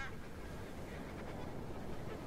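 Geese honking faintly: one call right at the start, then a few softer calls.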